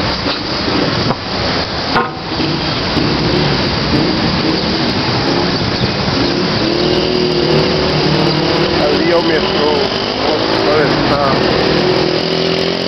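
Street traffic noise: a steady, loud mix of car engines and passing vehicles on a city road.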